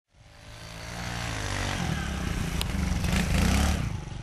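A small dirt bike's engine running and revving as the bike rides toward the listener. It grows louder throughout, and its pitch rises about two seconds in.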